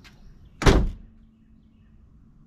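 A single heavy thump about two-thirds of a second in, dying away quickly.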